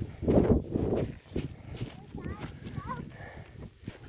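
Footsteps in soft dune sand with rustling handling noise on the phone microphone, strongest in the first second or so, and a faint high voice about two seconds in.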